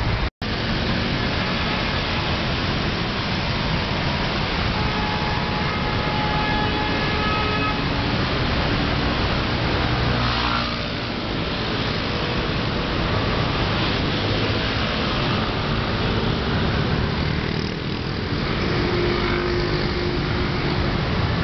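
Busy city street traffic: cars and motor scooters running and moving past, a steady wash of engine and tyre noise. The sound cuts out for an instant just after the start.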